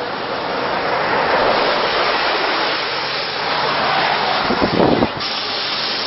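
A steady rushing hiss that swells over a few seconds, with a short low rumbling buffet about five seconds in, after which the hiss drops off suddenly.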